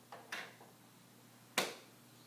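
A glass test tube set down into a test-tube rack, giving two light knocks close together, followed about a second and a half in by a single sharper click, the loudest sound.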